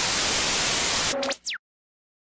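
Loud television static hiss. A little over a second in it gives way to a brief electronic tone and a quick pitch sweep up and then down, then cuts off abruptly.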